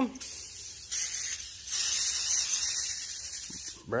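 WD-40 aerosol can spraying with a steady hiss, stronger from about two seconds in and stopping just before the end: the can, repressurised with compressed air, sprays again.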